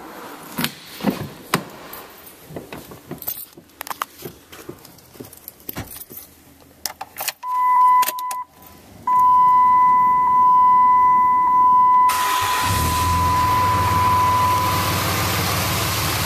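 Keys jangling and handling clicks, then a steady high dashboard warning tone with the key turned on in a 2007 Dodge Ram 2500. About twelve seconds in, the Cummins turbo-diesel starts and settles into a steady idle while the tone carries on briefly.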